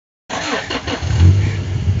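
A motor vehicle's engine running, its low steady drone coming up about a second in, over rustling and a faint voice near the start.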